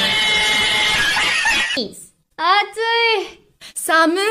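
A loud, harsh scream lasting under two seconds that cuts off abruptly. After a brief pause, a high-pitched woman's voice says two short words.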